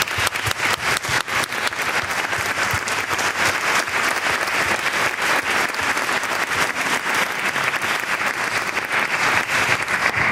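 Audience applauding: dense, steady clapping from a room full of people.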